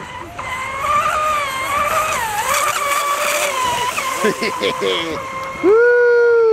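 Electric RC mono hull boat running fast across the water, its motor and propeller giving a steady high whine that wavers in pitch and dips briefly midway. Near the end a sudden, much louder held tone comes in, falling slowly in pitch.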